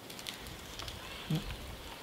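Backing paper being slowly peeled off a self-adhesive vinyl sail number, a faint scattered crackling, over a low rumble.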